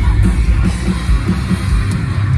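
Metalcore band playing live through a concert PA: distorted electric guitars over drums, with fast, dense kick-drum pulses and cymbal hits.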